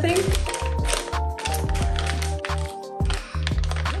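Background music with held tones and a steady bass line, over the crinkle of a plastic snack bag being handled and opened.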